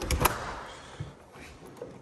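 Window handle and latch of an Andersen window being worked open: two sharp clicks just after the start, a fading rustle, then a lighter click about a second in.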